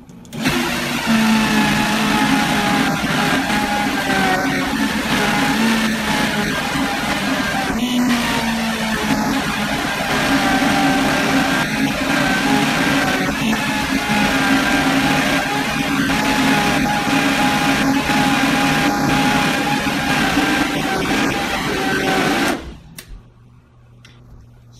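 Vitamix blender motor running at speed for about 22 seconds, churning a thick puree of fruit scraps, coffee grounds and a little added water while the tamper works it down. The motor gives a steady drone, starts about half a second in and cuts off shortly before the end.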